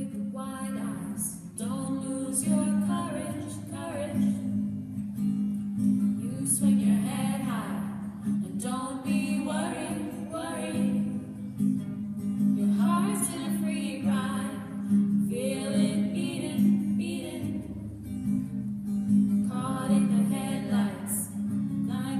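A woman singing over a strummed acoustic guitar in a tunnel.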